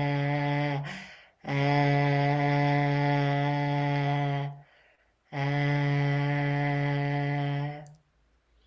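A man's voice sounding a long, steady 'é' vowel at one low pitch with his tongue stuck far out of the mouth, a tongue-and-throat exercise. It is held three times, with short breaths between. The first tone ends about a second in and the last stops just before the end.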